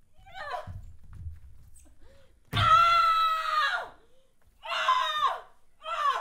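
A performer's voice screaming in wordless cries: a short falling cry, then a loud held scream a little over a second long that slides down at its end, then another short falling cry.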